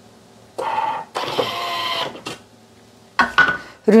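Thermomix TM6 releasing its lid: a short mechanical whirr from the motorised locking arms, followed by a click and a few knocks as the lid is lifted off and set down on the table.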